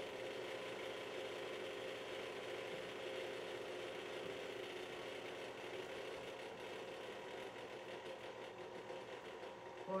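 Electric stand mixer running steadily at its lowest speed, beating cookie dough as flour is added a little at a time.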